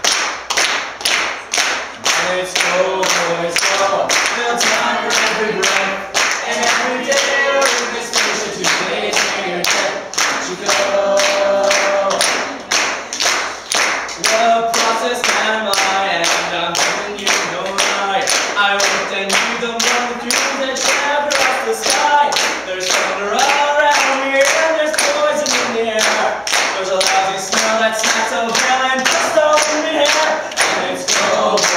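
A man singing a Newfoundland folk song a cappella, with an audience clapping a steady beat along with him, about two claps a second.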